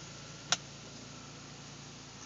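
One sharp click about half a second in, over a steady low hum: the Mini Cooper's power convertible top seating against the windshield header as it finishes closing.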